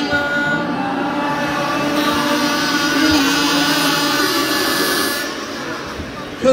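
Hundreds of audience members humming and buzzing through kazoos together, a dense mass of many buzzy pitches that thins out near the end.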